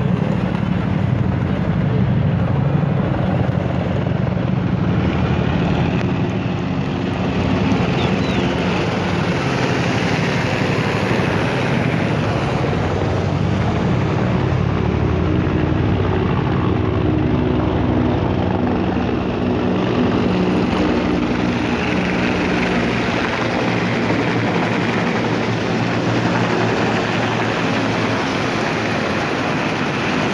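Formation of military helicopters passing low overhead, their rotors making a continuous low rapid beat with engine noise. Steady humming tones join in about halfway through as more helicopters come over.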